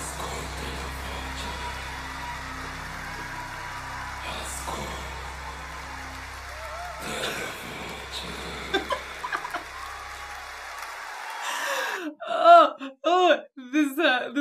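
A low, steady drone under a hazy crowd-filled concert-hall ambience from a live concert recording playing back, with a few short chuckles about two-thirds of the way through. The drone and crowd sound stop about three seconds before the end, and a woman laughs loudly.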